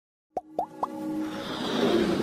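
Intro sound effects for an animated logo: three quick rising pops about a quarter second apart, then a swelling whoosh that builds up.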